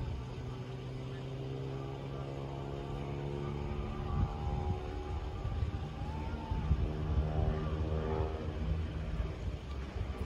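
An engine running steadily with a low drone, its pitch shifting a little in the second half.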